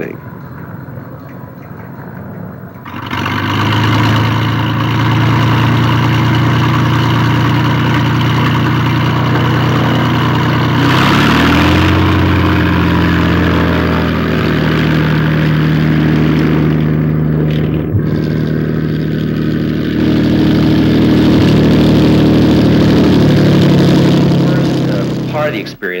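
Single-engine light aircraft's piston engine running. It comes in loud about three seconds in, rises in pitch about eleven seconds in, then holds steady until it cuts off near the end.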